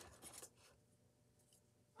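Near silence: room tone, with a brief faint rustle of handling in the first half second.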